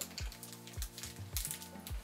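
Background music with a steady beat and held low notes, with faint rustling as a small cloth packet is handled.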